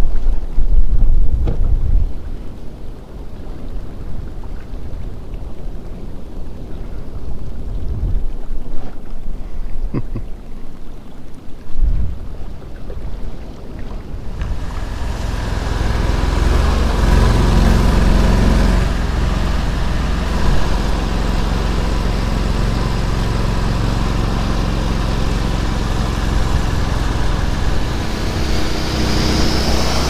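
Argo amphibious ATV's engine running as it drives through shallow water, with a few knocks in the first half. About halfway through the engine grows much louder and stays loud and steady.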